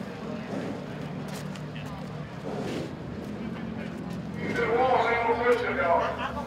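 Background voices and murmur over a low steady hum, then a man's voice, loud and close, from about four and a half seconds in.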